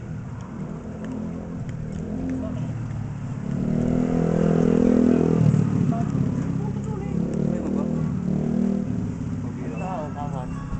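A motor vehicle engine running close by, swelling to its loudest around four to five seconds in and then fading, as a vehicle passing on the road would.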